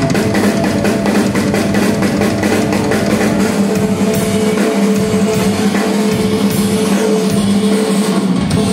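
Rock drum solo played live on a full drum kit: fast, dense strikes on drums and cymbals, with a steady low note sustained underneath.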